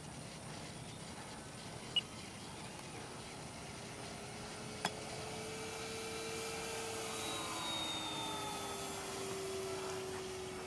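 Electric RC model P-47 Razorback warbird flying past. Its motor and propeller give a faint, steady whine that grows a little louder and slides slowly down in pitch as it comes through. Two brief clicks, about two and five seconds in.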